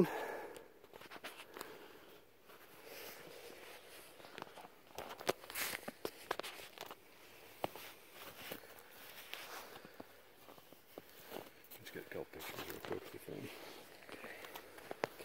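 Slow, irregular footsteps in fresh snow on a forest floor, with scattered small clicks and rustles.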